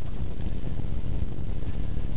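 Steady low background rumble, even throughout, with no distinct events.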